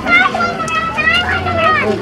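Children's high-pitched voices talking and calling out, over a low murmur of street noise.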